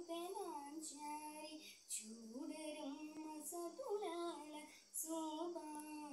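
A young girl singing solo, holding notes and sliding between them in ornamented turns, with short breaths about two seconds in and just before five seconds.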